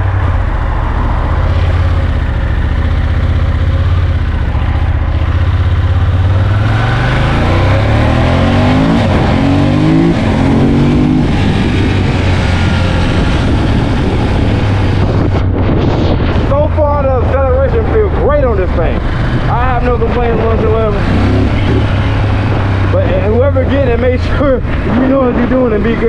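2017 Ducati Monster 1200 S's L-twin engine running steadily at low revs, then pulling away about six seconds in, its pitch rising in several steps as it accelerates through the gears. It then settles into steady running at road speed.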